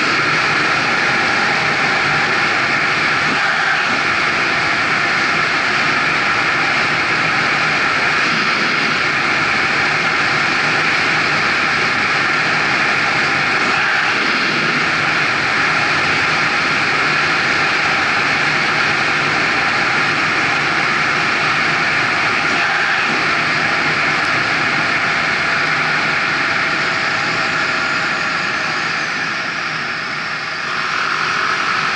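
Kymco Agility City 125 cc scooter riding at about 60 km/h: steady engine and wind noise that eases off slightly near the end as the scooter slows.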